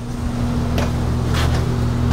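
A steady low hum, with a couple of light clicks from a wooden cabinet door being swung open about a second in.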